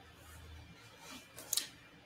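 Quiet room with a faint low hum and a few small, faint clicks and rustles about a second and a half in.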